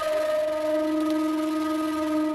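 One steady held electronic tone with a few overtones and a faint hiss under it, a dramatic sound-effect sting from the soundtrack. It starts abruptly and holds without changing pitch.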